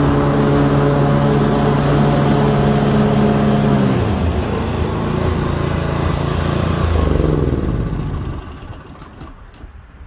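Walk-behind lawn mower's small gasoline engine running steadily, then slowing and wavering about four seconds in, briefly picking up, and winding down to a stop as it is shut off near the end.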